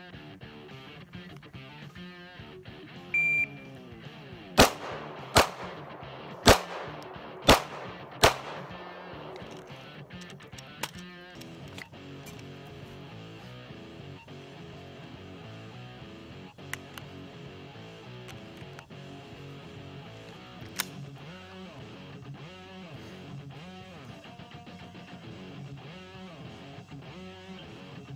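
Shot-timer start beep, then five handgun shots fired over about four seconds, the fifth coming just over five seconds after the beep: over the drill's five-second par. Guitar music plays underneath throughout.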